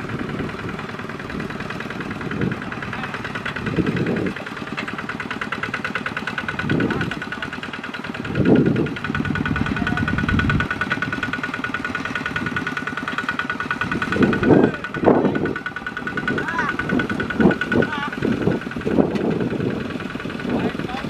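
Single-cylinder diesel engine of a walking tractor running steadily under load as it drags a loaded trailer through deep mud, with a fast even firing beat and a thin whine through the middle. Men's voices call out over it several times.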